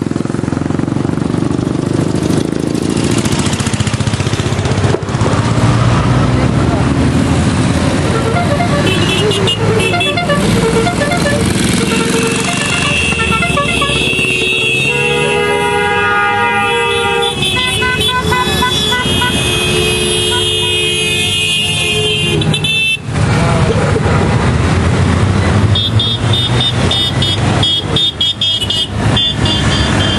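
A dense stream of touring motorcycles riding past close by, many engines running together, with horns tooting: long held horn notes through the middle and again near the end.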